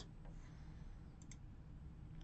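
Two faint computer mouse clicks in quick succession about a second in, over quiet room tone.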